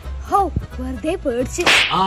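A short whoosh effect: a quick burst of hiss about a second and a half in, lasting under half a second.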